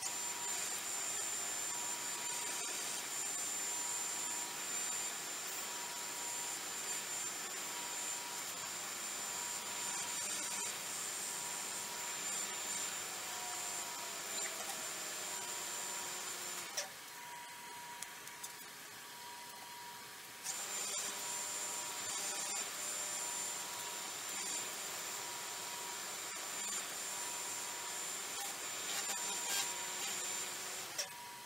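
Wood lathe, a Nova Galaxi DVR, running with a steady high electronic whine while a folded paper towel rubs against the spinning resin bowl to apply sanding sealer. The rubbing and the whine drop away for a few seconds past the middle, then resume.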